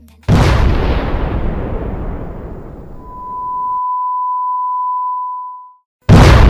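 Edited-in boom sound effect: a sudden loud blast that dies away over about three seconds and then cuts off abruptly. A steady single-pitch beep comes in near its end and holds for nearly three seconds.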